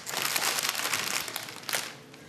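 Packaging crinkling as it is handled, a dense crackle that thins out and fades toward the end, with one sharper click near the end.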